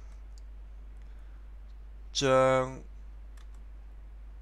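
A man's voice slowly pronouncing a single Cantonese syllable, zoeng1 (蟑, the first half of the word for cockroach), held at a steady high pitch for about half a second, a little over two seconds in. A few faint clicks follow.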